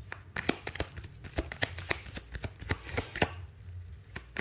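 Tarot deck being shuffled by hand: an irregular run of sharp card clicks and taps, several a second.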